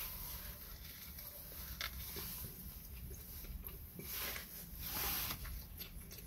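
Faint, close chewing of a bite of a sub sandwich, with soft crunches of lettuce and onion now and then.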